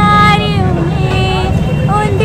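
A woman singing, holding long notes with slight wavers in pitch, over a steady low rumble of street traffic.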